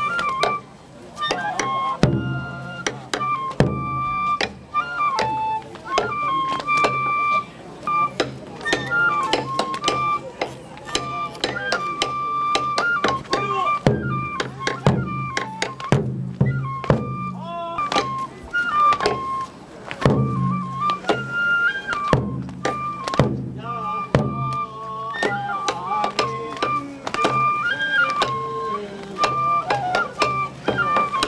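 Japanese folk kenbai dance music: a bamboo flute plays a melody in held notes that step up and down, over a steady stream of drum beats and sharp strikes.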